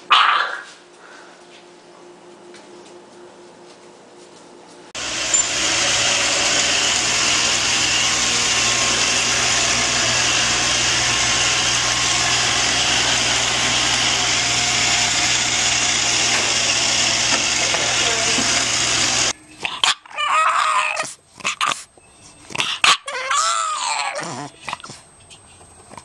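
A brief rising pitched call at the start. Then a robot vacuum cleaner runs with a steady whir for about fourteen seconds and cuts off suddenly. Near the end, a bulldog puppy makes a string of gliding, pitched vocal calls.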